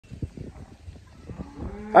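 Angus heifer mooing: one steady low moo that starts about three-quarters of the way in and grows louder, over faint scattered low knocks from the mob in the yard.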